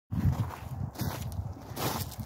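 Footsteps on gravel, a few irregular steps with scuffing between them.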